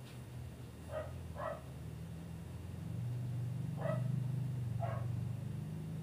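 A dog barking, four short barks, over a steady low hum.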